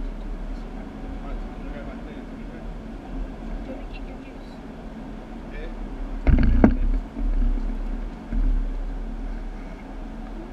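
Go-kart engines droning around an indoor track, heard muffled through viewing-gallery glass, with a steady low hum. A sudden loud knock comes a little past six seconds in, followed by two shorter swells of noise.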